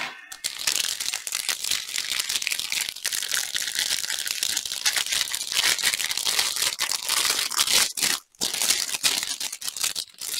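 Thin clear plastic packaging crinkling steadily as it is handled and unwrapped from a bundle of small bags of diamond-painting drills, with a short break about eight seconds in.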